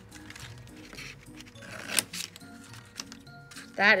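Soft background music with a repeating low melody, over a few sharp snips of scissors cutting into a paper plate, the loudest snip about halfway through.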